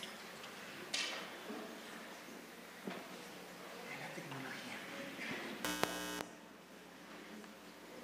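A short, loud electrical buzz from the room's sound system, lasting about half a second near the end, of the kind heard when an audio cable is plugged into a live amplifier. Faint murmuring voices and a couple of light knocks sit underneath.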